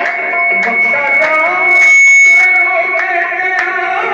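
Qawwali music: harmonium and a singing voice over tabla strokes, with a high held tone that swells loudest about two seconds in.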